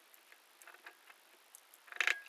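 Near silence with a few faint, scattered clicks and ticks from a hot glue gun being worked as glue is run around a cord plate on a plastic box, with a slightly louder cluster of clicks near the end.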